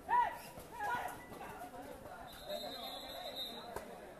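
Shouting voices at a kabaddi match: a loud yell right at the start and another about a second in. A steady high tone runs for over a second in the second half.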